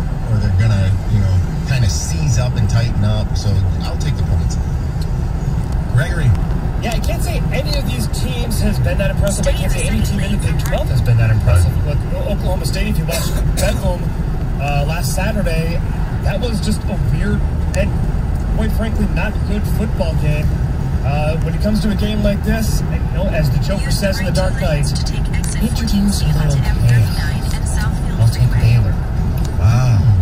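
Steady low road and engine rumble inside a car cabin at highway speed, with indistinct talking from the car radio underneath.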